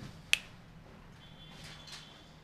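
A single sharp click about a third of a second in, over faint room tone.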